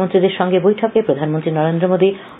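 Speech only: a newsreader reading a Bengali radio news bulletin.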